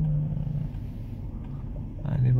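Low, steady rumble of a vehicle heard from inside its cabin while it waits in traffic, with a steady low hum that stops less than a second in.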